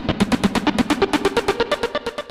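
Electronic music playing back from Reason: a Kong drum loop under a Thor synthesizer arpeggiated by the RPG-8, in an even run of short notes about nine a second. The synth's master level is being raised to record volume automation.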